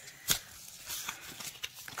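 Plastic bubble-wrap packaging rustling and crinkling as it is handled, with one sharp click shortly after the start and several fainter ones.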